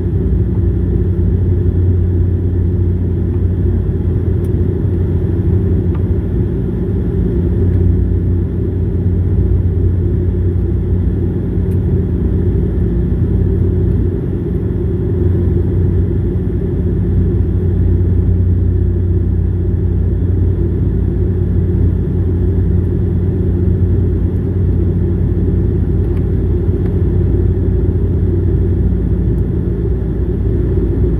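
Cabin noise of a Bombardier Dash 8-400 in flight, heard from a seat beside the wing: a steady low drone from the Pratt & Whitney Canada PW150A turboprop and its six-blade propeller.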